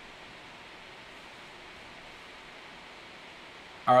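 Steady, even hiss of background noise with no distinct events in it; a man's voice starts right at the end.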